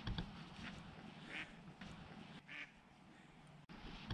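A duck quacking a few times, the calls about a second apart, over a steady low rumble with a thump near the start.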